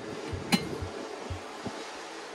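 Stainless-steel door of a Travel Buddy 12-volt oven being pulled open, with one sharp metallic click about half a second in, over low, irregular thumps.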